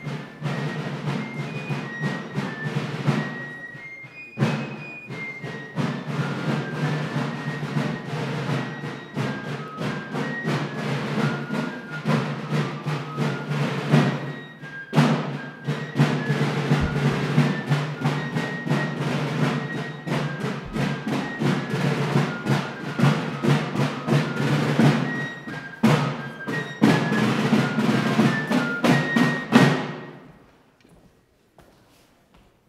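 Fife and drum corps playing a march: a high fife melody over steady drumming, stopping at the very end.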